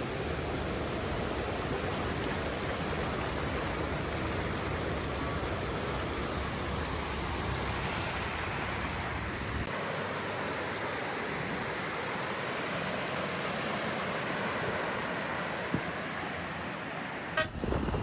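Mountain stream rushing over boulders: a steady roar of white water that changes slightly in tone about halfway through.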